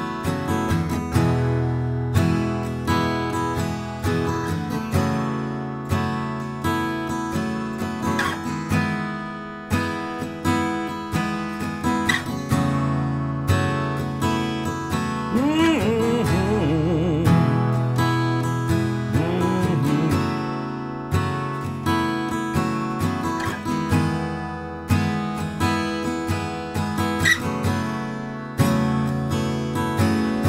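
Steel-string acoustic guitar played with a pick: strummed chords, with bent notes about halfway through.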